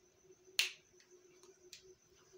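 Whiteboard marker cap clicking: one sharp snap about half a second in and a fainter click near the end, over a faint steady hum.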